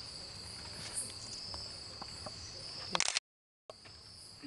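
Night-time rainforest insect chorus: a steady high-pitched trilling drone, with a few small handling clicks. About three seconds in there is a short clatter, and then the sound cuts out for half a second.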